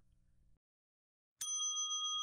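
Silence, then a bright bell-like chime struck about one and a half seconds in, ringing on steadily: a sound effect that marks a new section.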